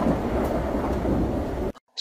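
Thunder sound effect: a loud rumble under a hiss like heavy rain, cutting off abruptly near the end.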